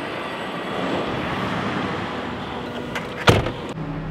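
A heavy truck driving close past, its engine and road noise swelling and then easing off. About three seconds in there is one loud, sharp thump.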